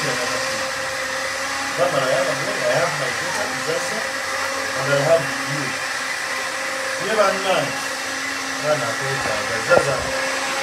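A steady mechanical hum and whir runs throughout, with a man's voice coming in short, quiet snatches several times.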